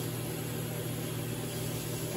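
A pot of red beans and rice mix in water and melted butter bubbling steadily on the stove, over a constant low hum.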